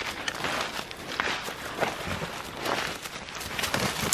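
Footsteps hurrying through dry leaf litter and brush, with irregular rustling and crackling of leaves and twigs.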